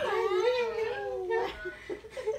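A long-haired cat's drawn-out, wavering meow lasting about a second and a half, followed by a few short faint sounds.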